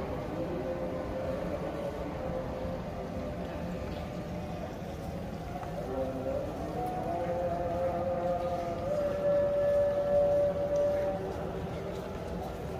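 A voice chanting from the mosque in long held notes that bend slowly in pitch, growing loudest about nine to eleven seconds in.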